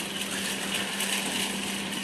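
Scooter running at a steady slow speed: one even, low hum under a steady hiss of wind and road noise.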